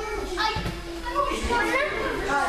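Children's voices chattering and calling out, several at once and overlapping, with no clear words.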